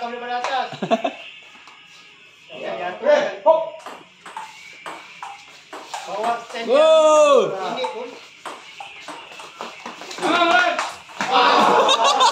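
Table tennis ball clicking back and forth between paddles and table during a rally, with men's shouts and exclamations between the hits, including one drawn-out cry about halfway through.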